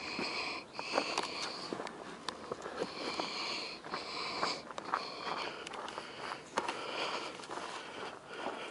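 Close breathing of the person holding the camera, quick and repeated at about one breath a second, with scattered crunches of footsteps on gravelly ground.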